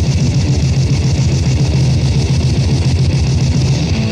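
Grindmetal band playing on a 1990 demo-tape recording: loud, heavily distorted guitars holding a low riff over a fast, even pulse.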